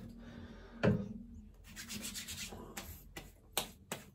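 Wet hands rubbing over the face, spreading witch hazel toner over freshly shaved skin. There is a single sharp knock about a second in and a few quick taps near the end.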